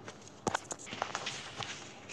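A picture book being closed and turned over in the hands: paper and cover rustling with a quick series of taps and knocks, the loudest about half a second in.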